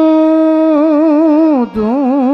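A male voice singing a devotional bhajan, holding a long note on the word "tū". The note is steady at first, then wavers in an ornamented turn, breaks briefly near the end, and the next phrase begins.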